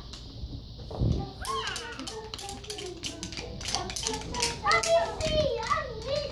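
Young children's voices and chatter over a children's song playing, with scattered clicks of wooden rhythm sticks being tapped.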